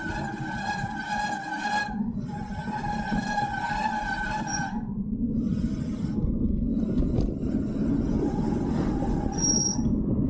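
Wind noise on the microphone and tyre rumble of a bicycle rolling downhill on tarmac, getting louder in the second half. A steady high whine runs alongside for the first five seconds, breaking off briefly about two seconds in.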